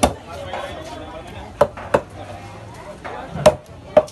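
A large curved knife chopping through a sailfish on a wooden chopping block: five sharp knocks, one at the start, two close together about a second and a half in, and two more near the end.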